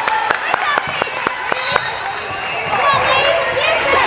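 Volleyballs being hit and bouncing in an echoing gym: many sharp knocks, several a second, over a steady hum of crowd chatter and distant voices, with a few brief high squeaks in the middle.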